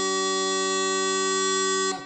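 Bagpipe music: a long, buzzy held note over a steady drone, the last note of the tune, cutting off just before the end with a short ringing fade.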